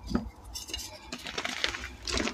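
Hands squeezing and crushing lumps of dyed, reformed gym chalk, with pieces knocking together: a string of short, irregular crunches and clinks.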